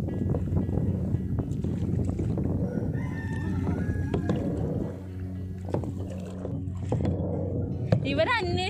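Kayak paddle strokes splashing in the water over a steady low hum, with a faint high call around three to four seconds in.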